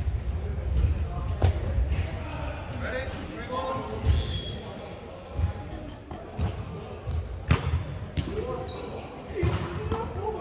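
Volleyball rally in a large echoing sports hall: several sharp smacks of hands on the ball, with the loudest about one and a half seconds in and again past seven seconds. Short sneaker squeaks on the hardwood court and players' voices come in between.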